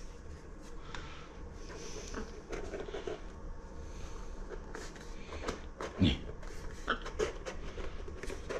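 Gift-wrap paper rustling and small boxes being handled as a present is unwrapped, with scattered light clicks and taps. A short vocal sound cuts in about six seconds in.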